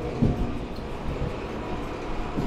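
Handling noise from a hand-held camera being turned around, a few soft knocks and rubs near the start, over a steady low room rumble.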